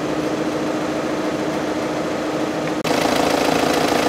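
Volkswagen 2.0-litre four-cylinder turbo-diesel idling with a steady hum. Just under three seconds in there is a sudden break, and the idle comes back louder and fuller.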